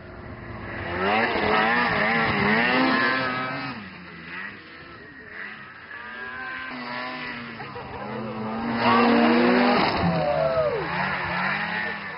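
Snowmobile engines revving as riders pass, their pitch rising and falling with the throttle. Two loud passes: one from about a second in, the other near the end.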